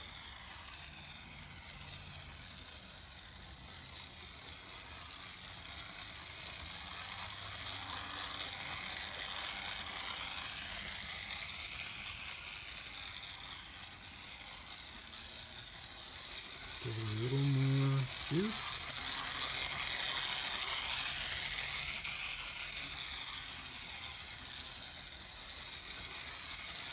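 Playcraft model locomotive running around a small loop of track: its electric motor and gearing making a steady mechanical whirr that swells and fades as it circles.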